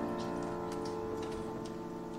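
A held piano chord ringing on and slowly dying away, with a scatter of light, high ticks over it, a few each second.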